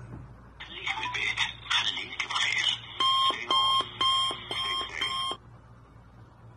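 Electronic tones from a mobile phone: a busy run of tones, then five evenly spaced beeps about two a second, stopping shortly before the end.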